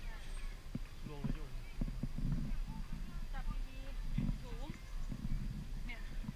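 Footsteps going down a steep flight of concrete steps, an uneven run of shoe knocks, with people talking in the background.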